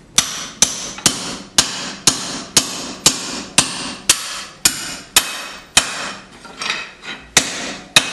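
Hand hammer striking a punch driven into red-hot leaf-spring steel on an anvil, hot punching a pin hole in a knife blank. A steady run of blows, about two a second, each with a bright metallic ring, then a couple of lighter taps and one more blow near the end.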